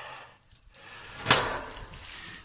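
Wood-burning sauna stove's metal firebox door being shut, with one sharp bang a little over a second in.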